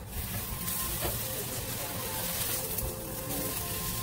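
Tortillas sizzling as they fry in a pan for enchiladas; the hiss comes on suddenly and carries on steadily.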